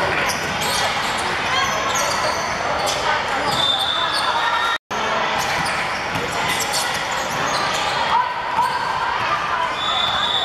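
A basketball bouncing on a wooden sports-hall floor during play, with sneaker squeaks and the voices of players and spectators echoing in a large hall. The sound drops out completely for a moment just before the halfway point.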